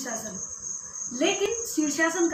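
A cricket trilling steadily on one high, unbroken note, with a woman's voice starting again about a second in.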